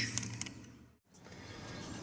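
A faint steady low hum fades out and breaks off in a sudden cut to silence about a second in. Faint background noise follows.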